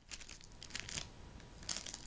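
Plastic blind-bag wrapper of a Hot Wheels mystery model crinkling as it is handled, in short crackles that come in clusters near the start, around one second in and near the end.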